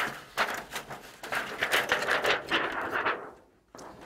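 A thin protective plastic sheet being pulled out of a computer case, crinkling and rustling for about three seconds before it stops.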